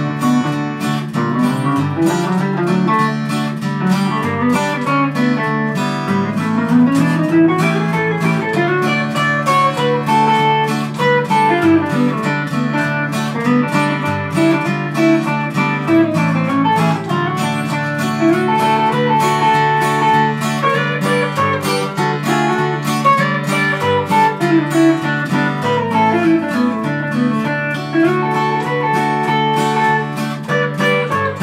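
Instrumental break of two guitars in a country-blues tune: a steel-string acoustic guitar strumming steady rhythm chords while an archtop guitar plays single-note lead runs that rise and fall above it.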